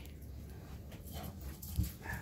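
Faint rustling of clothing and a couple of brief, soft vocal noises as two people embrace and a shirt comes off, with a single dull thump near the end.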